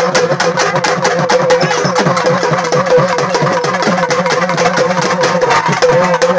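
Loud drumming, rapid strokes several times a second, under a held, slightly wavering note.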